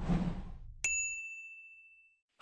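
Logo intro sound effect: a soft whoosh fades out, then a single bright ding rings out and decays over about a second.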